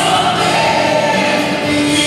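Live worship song played by a band, with several singers and many voices singing together.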